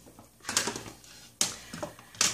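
A few light clicks and knocks of craft supplies being handled on a tabletop, the sharpest about one and a half seconds in.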